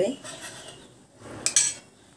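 A metal spoon clinks sharply once against an aluminium pot about one and a half seconds in, after a short stretch of faint kitchen noise.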